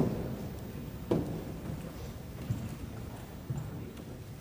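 A few scattered knocks and bumps from musicians settling on stage with their instruments: a sharp click right at the start, a heavier knock about a second in, then two softer ones, over the quiet murmur of a large hall.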